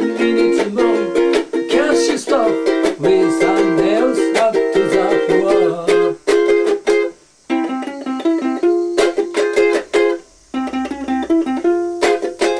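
A ukulele strummed solo through an instrumental break, chords in a steady rhythm. The strumming stops briefly twice, about seven seconds in and again about ten seconds in.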